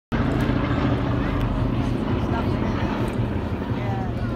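A B-17 Flying Fortress's four radial piston engines give a steady low propeller drone as the bomber flies low overhead. The drone eases slightly as it banks away.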